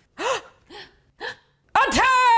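A person's voice making three short gasps that rise and fall in pitch, separated by silence, then a loud high-pitched cry starting near the end.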